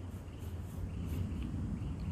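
Graphite pencil scratching faintly on paper as a line is drawn, over a steady low hum.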